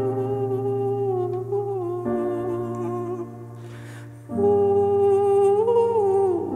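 A man's voice holding long wordless sung notes over sustained chords that change twice, from an acoustic guitar, cello and piano. A breath is taken about four seconds in before the voice comes back in.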